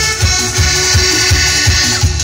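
Loud live dance music from a keyboard band, with a steady bass beat throughout.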